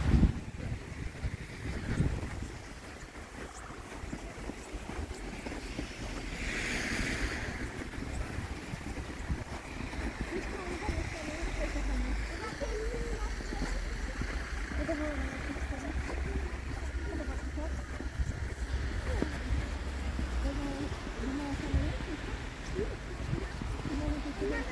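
Wind buffeting a handheld camera's microphone in a steady low rumble on a snowy street, with faint voices of people walking close by and a brief hiss about seven seconds in.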